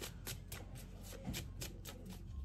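A tarot deck being shuffled in the hands: a quick, even run of soft card slaps, about seven a second.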